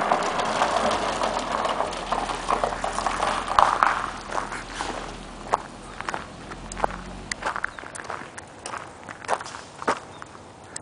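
Footsteps crunching on loose gravel in irregular steps, thinning out and getting quieter toward the end. Over the first few seconds a rushing hiss fades away.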